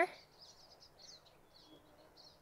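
Faint birdsong: a quick run of short, high chirps and twitters.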